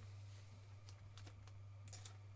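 Near silence: a low steady hum with a few faint, light clicks scattered through it.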